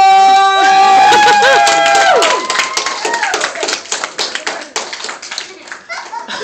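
Long held shouting voices for the first couple of seconds, then a crowd of children clapping for several seconds, the clapping thinning out near the end.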